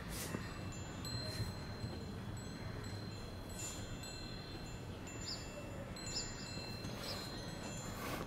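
Metal tube wind chime ringing softly: tubes struck now and then, every second or so, their long high tones overlapping and dying away slowly.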